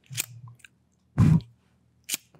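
Rubber-gloved fingers handling a close microphone's grille for ASMR: a short sharp click near the start, then one louder, bass-heavy brushing sound a little over a second in.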